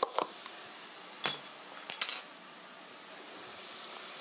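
Ground pork and vegetables sizzling faintly in a frying pan, with a few light clinks and knocks of kitchen utensils or containers being handled, the clearest a little over a second in and again about two seconds in.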